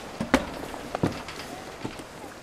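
Footsteps on a wooden gangway: three distinct knocks, a little under a second apart.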